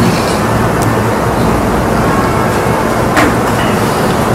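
Steady background rumble and hiss, about as loud as the speech around it, with a faint short sound about three seconds in.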